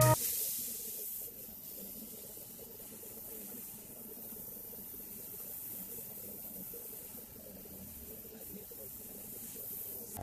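Paint being sprayed onto a small plastic model part: a soft, steady hiss.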